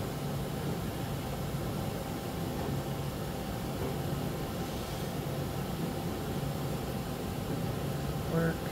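Steady low machine hum with an even hiss, no distinct knocks or clicks: the background running noise of shop machinery.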